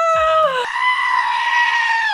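A woman's long high-pitched scream falls away about half a second in. A goat's scream follows at once, one long steady human-like bleat held to the end.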